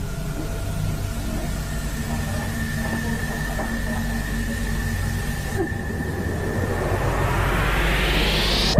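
A low, steady rumbling drone with a faint high tone held over it, swelling into a rising whoosh near the end: an eerie horror-style sound-design underscore.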